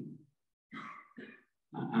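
A man's speaking voice trails off into a pause with two short, soft vocal sounds, like breaths, and then speech starts again near the end.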